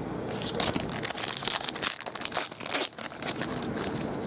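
Foil wrapper of a 2011 Panini Elite football card pack being torn open and crinkled by hand: a dense run of sharp crackles that starts just after the beginning and thins out near the end.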